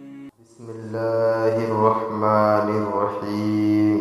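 A voice chanting slowly in long, drawn-out melodic notes, in the style of Islamic devotional recitation. It fades away near the end.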